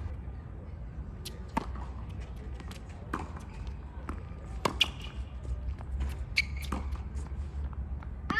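Tennis ball struck by racquets and bouncing on a hard court during a rally: a series of sharp knocks a second or so apart, the loudest a quick hit-and-bounce pair a little before the middle, over a steady low rumble.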